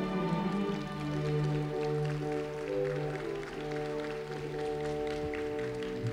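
Orchestra playing slow music with long held notes.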